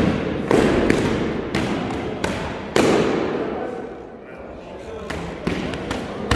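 Sparring swords and shields striking each other in quick exchanges, about seven sharp hits, each echoing around a large hall, with a short lull past the middle.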